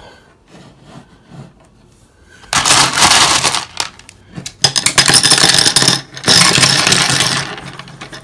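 Small washed gravel stones poured into a wire hardware-cloth cage, rattling against the mesh and the ceramic heat emitter inside it. There are three pours of a second or so each, starting a couple of seconds in, after a few light clicks.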